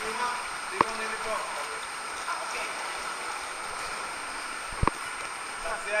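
Steady rush of water at a waterslide start, under scattered voices, with two sharp knocks, one about a second in and one near five seconds in.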